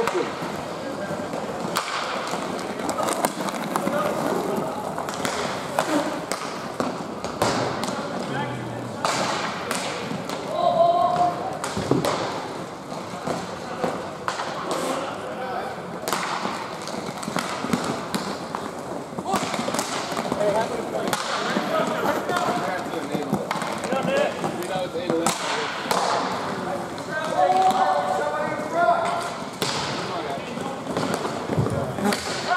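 Roller hockey play: sharp clacks and thuds of sticks, ball or puck and boards, scattered irregularly throughout, over a steady background of rink noise, with voices calling out now and then.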